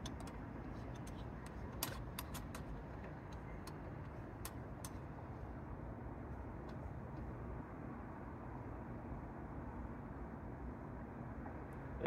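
Faint, steady hum of distant road traffic, with a few light scattered clicks from a camera and T-adapter being handled at the back of a telescope.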